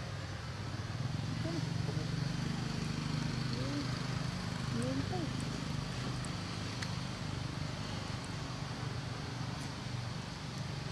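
A steady low motor hum, stronger through the first half, with faint voice-like sounds that briefly rise and fall in pitch over it.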